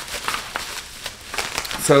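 Plastic bubble wrap crinkling in the hands, with irregular small crackles, as a small light is unwrapped from it.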